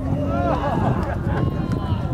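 Shouts and calls from several people at a soccer match, over a steady low rumble.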